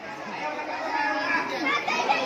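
A group of people chattering and talking over one another, growing a little louder towards the end.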